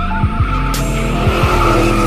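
Car burnout sound effect: tyres squealing and screeching steadily, with a car's engine rumble beneath.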